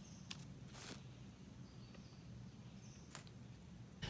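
Near silence: faint outdoor ambience with a few soft clicks and brief faint high chirps.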